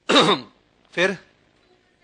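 A man clears his throat once, briefly and loudly, then says a single short word.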